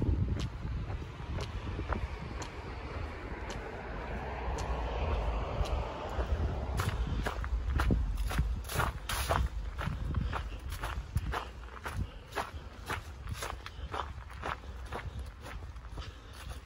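A hiker's footsteps on a leaf-strewn dirt trail, about two steps a second, plain from about seven seconds in, over a steady low rumble. In the first few seconds a broad hiss swells and fades.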